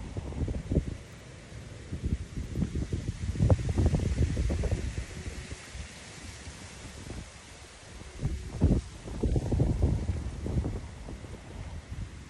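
Wind buffeting the microphone in irregular gusts, a low rumbling noise that swells around a few seconds in and again near the end.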